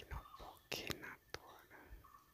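A person whispering a few words, breathy and faint.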